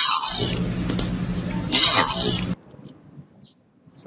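Background-noise layer separated out of the Yanny/Laurel recording, played back: a low steady fan hum with hiss over it. The hum drops out briefly just after the start and cuts off about two and a half seconds in.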